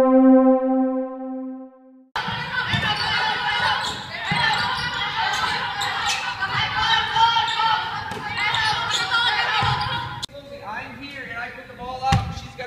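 A steady synthesized logo tone for about two seconds, then the sound of a basketball practice in a gym: basketballs bouncing on the hardwood floor among many players' voices. The activity drops away about ten seconds in.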